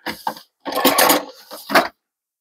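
Hands and a small tool scraping and rustling at the mossy base of a bonsai forest planting: a short burst, then about a second and a half of rough, crackly scraping.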